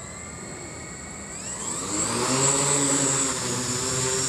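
OFM GQuad-8 octacopter's eight motors and propellers spinning up with a rising whine as it lifts off. It then settles into a steady, louder hum as it hovers low with no payload.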